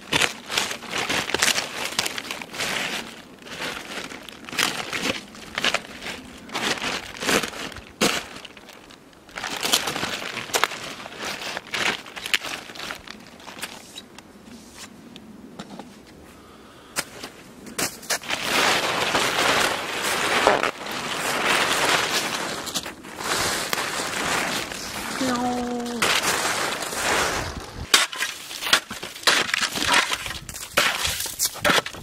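A white plastic tarp crinkling and crackling as it is pulled off and bunched up, in irregular fits and starts. The sound is louder in the second half.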